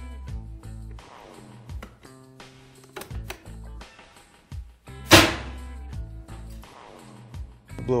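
Background music, with one loud sharp crack about five seconds in as the hose-fed impact test gun fires a hardened-steel, chisel-point projectile into non-safety-rated sunglasses. The shot blows a hole right through the lens.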